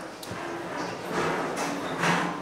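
A roomful of people getting to their feet from metal folding chairs: several short scrapes, creaks and shuffles of chairs and feet, with faint murmured voices underneath.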